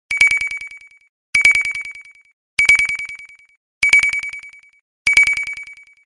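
Ringing sound effect from a TV news intro: five short rings, about one every 1.2 seconds. Each ring is a rapid trill of strikes on one high tone that fades out over about a second.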